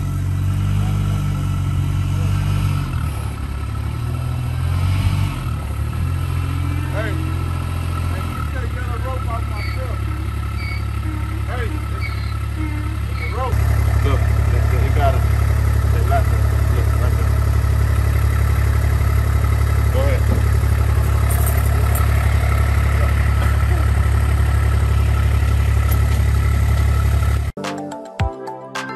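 Engine of a Kubota utility vehicle running while it pulls a tow strap hooked to its hitch. Its pitch steps up about 8 seconds in and again about 13 seconds in, and it runs louder from then on.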